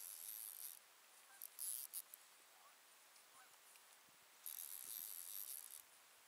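Fishing reel being cranked in short spurts, a faint high whirring hiss that comes and goes in bursts of about a second, while the rod bends under a hooked fish's pull.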